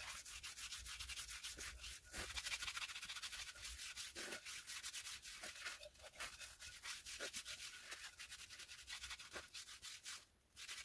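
Hands rubbing oil into a wooden karlakattai (Indian club), a faint dry rubbing made of rapid back-and-forth strokes along the wood. It pauses briefly about two seconds in and again near six seconds.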